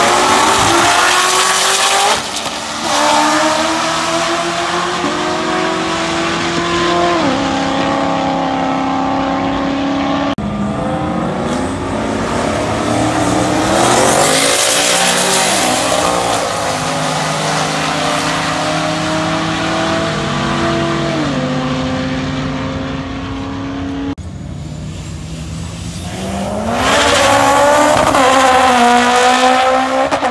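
Street cars roll racing side by side down a drag strip at full throttle. Their engine pitch climbs, then drops back at each upshift. The loudest passes come near the start, about halfway through and near the end.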